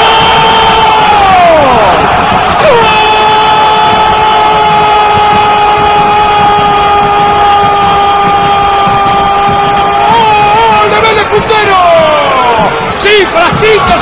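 Football TV commentator's drawn-out goal cry, "goool", held on one high note: a first cry falls away about a second and a half in, then a second one is held for about seven seconds, followed by excited shouts near the end. Stadium crowd cheering underneath.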